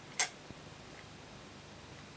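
A person slurping a sip of ale from a glass: one short, sharp slurp about a fifth of a second in, followed by a couple of faint ticks.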